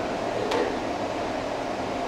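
Steady room noise, an even hiss like ventilation, with one faint click about half a second in.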